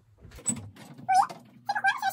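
A domestic cat meowing twice in short, high calls, the first rising in pitch and the loudest, with a small knock about half a second in.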